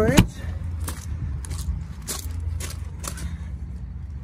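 A travel trailer's exterior storage compartment door being unlatched and opened: a sharp click as it releases, then a string of lighter clicks about every half second over a low steady rumble.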